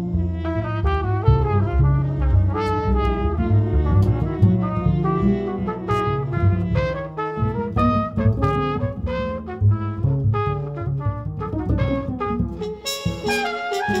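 Trumpet and acoustic double bass in a free jazz improvisation: the trumpet plays a busy line of short notes over the bass's low notes.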